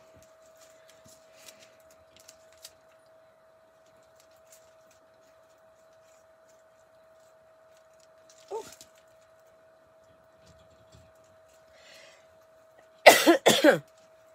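A woman coughing hard several times in quick succession near the end, choking on her own saliva.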